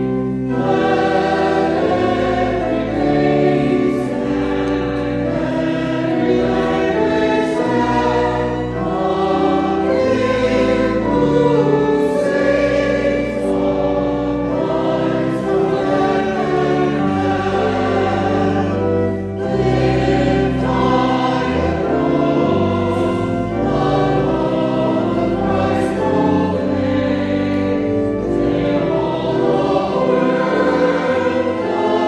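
A hymn sung by voices with organ accompaniment: held chords moving from note to note over a deep bass line, with a brief break between lines about two-thirds of the way through.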